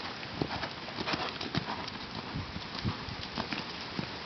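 Hoofbeats of a ridden grey horse cantering on a sand arena, a quick uneven run of thuds that is strongest in the first three seconds.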